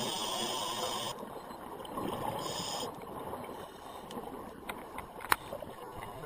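Scuba diver breathing underwater through a regulator: a hissing inhale for about the first second and a shorter one just before three seconds, with bubbling exhaust between. One sharp click about five seconds in.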